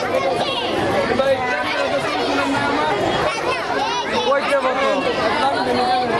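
Crowd chatter: many voices talking over one another at once, with some high-pitched voices standing out, none of them clear words.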